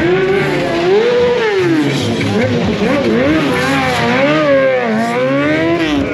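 Sport motorcycle engine being revved hard during stunt riding, its pitch rising and falling five or six times.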